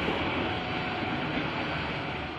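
Passenger train carriages rolling away from a station platform, a steady rolling noise from the wheels and cars.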